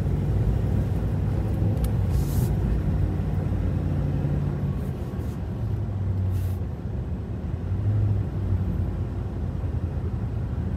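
Cabin sound of a 2020 Chevrolet Silverado 2500HD pickup under way: a steady low engine and road drone whose pitch shifts a little. Two short hisses come about two seconds in and again about six seconds in.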